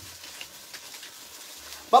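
Faint crackling and ticking from a wood-fired adobe stove and the hot clay pot on it, over a low steady background, with a woman's voice starting at the very end.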